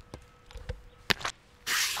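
A few faint knocks and one sharp smack about a second in as a spotted lanternfly is squished against a tree, then a loud, breathy hiss near the end.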